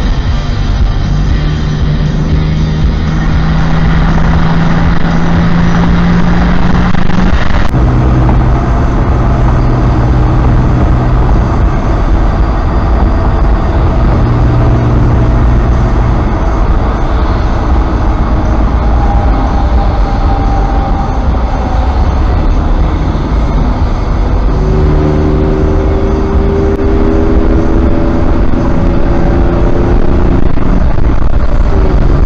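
Vehicle cabin noise while cruising on a freeway: a steady rumble of engine and tyres with held low tones. The sound changes abruptly about eight seconds in.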